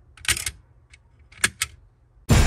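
Sharp plastic clicks from a M.A.S.K. Thunderhawk toy car as its roof button is pressed and its gull-wing doors spring open into wings: one click, then two close together about a second and a half in.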